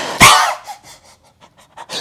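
A man's whispered evil laugh: unvoiced, breathy huffs of air rather than a voiced laugh. One loud rushing burst of breath comes in the first half-second, then a few softer puffs, and another sharp breath near the end.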